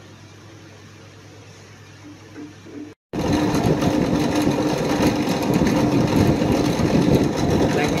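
Quiet room tone, then from about three seconds in a bench drill press motor running with a steady hum, its small tube bit boring a hole into a fossil giant clam shell pendant blank.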